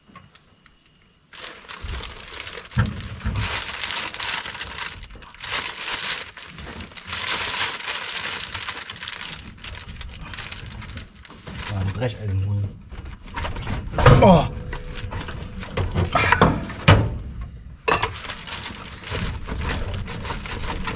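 Hands and loose metal parts rustling and scraping in a van's engine bay as parts around the cylinder head are worked loose, in irregular bursts. Low speech follows in the second half.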